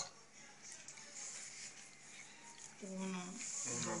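Quiet stretch of crocheting: faint high hiss and light rustle of yarn being worked on a crochet hook. About three seconds in, a woman's voice starts quietly counting stitches.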